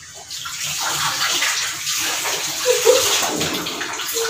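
Kitchen tap running steadily into the sink as dishes are washed under it.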